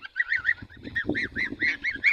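A flock of young geese calling: rapid, overlapping high peeping calls, each rising and falling in pitch, several a second.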